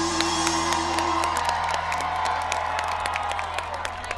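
Live rock band's closing chord ringing out and fading, with the crowd cheering and clapping as the song ends.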